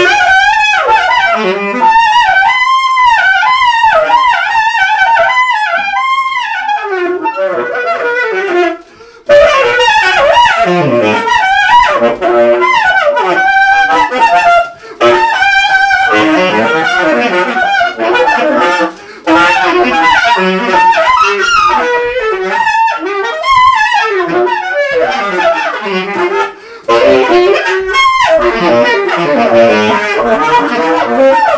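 Unaccompanied tenor saxophone playing fast runs, swooping glides and wavering bent notes. The playing breaks for short pauses about nine, fifteen, nineteen and twenty-seven seconds in.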